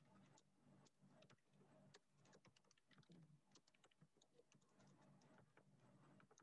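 Near silence with faint, irregular clicks of typing on a computer keyboard, several a second, over a faint steady low hum.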